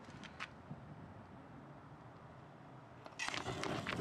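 Homemade waste-oil burner: a faint hiss with a few small clicks, then about three seconds in a sudden loud rushing whoosh as the freshly squirted oil catches and the flame flares up.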